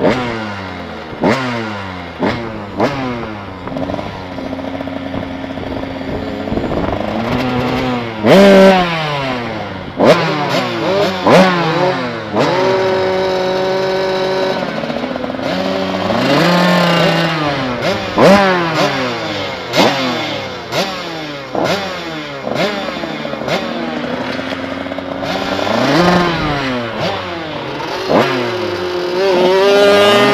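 Small off-road motorcycle engines at idle, blipped again and again so the revs rise and drop back every second or so, more than one bike at a time; now and then a rev is held steady for a second or two.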